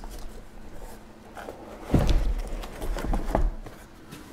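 Shrink-wrapped cardboard trading-card boxes being lifted out of a cardboard shipping case and set down in stacks: faint rustling, then a run of dull thumps and knocks about halfway through.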